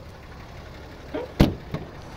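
One loud thump of a pickup truck's cab door, with a lighter click just after.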